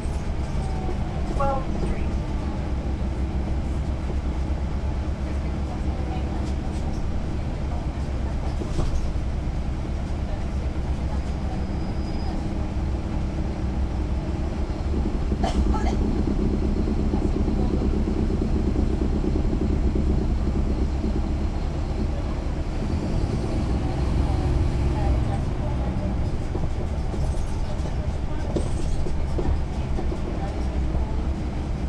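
The Caterpillar C13 ACERT diesel engine of a 2009 NABI 40-SFW transit bus, heard from the rear seat while the bus is under way. It is a steady low drone whose note swells a little about halfway through and again later on.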